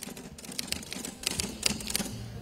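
A run of small, irregular clicks and light rustling, several a second, in a hushed room.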